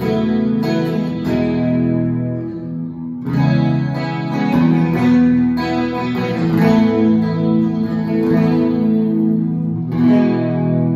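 Handmade hollow-body electric guitar with low-output pickups, strummed chords through an amplifier on a clean, undistorted tone, each chord ringing on before the next strum.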